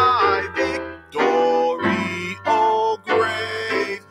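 A man singing a hymn into a microphone in long held phrases with short breaths between them, over a steady instrumental accompaniment with a held low note.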